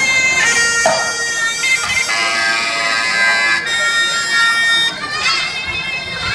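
Pi chawa, the shrill Javanese-style oboe of a Thai wong bua loi funeral ensemble, playing a melody of long held notes joined by bending, ornamented slides.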